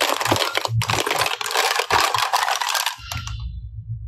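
Hard clear plastic capsule cases clattering and clicking against one another as a hand stirs through a pile of them, stopping after about three seconds.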